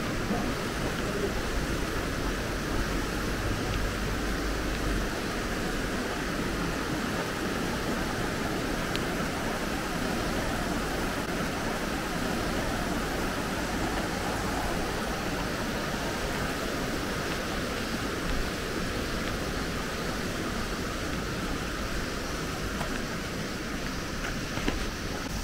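Steady rushing of a river, an even noise with no change in level.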